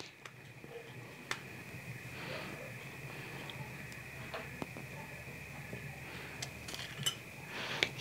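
Quiet hand work with tortillas and clay dishes: a few light clicks and taps as a tortilla is dipped in red chile sauce and laid on a clay plate. A faint steady high whine and a low hum sit underneath.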